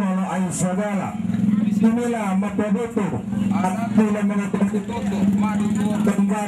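Voices talking almost without a break, over a steady low hum.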